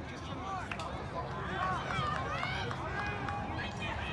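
Several voices shouting and calling out at once, overlapping, with no clear words; loudest around the middle.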